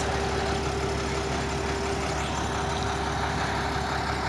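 Flatbed tow truck's engine idling steadily, with a constant hum running through it.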